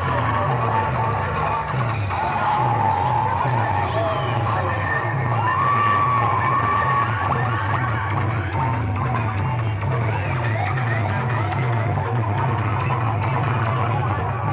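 Loud music played through a DJ sound-system rig's stacks of horn loudspeakers, with a heavy repeating bass beat and a wavering high melody over it.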